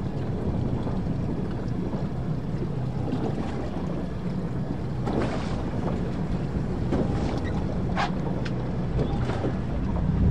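Wind rumbling over the microphone aboard a moving boat, over a steady low hum and rushing water. A few short hisses of water come through from about halfway on.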